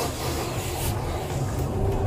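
Steady low rumble of a police patrol car driving, engine and road noise heard from inside the cabin.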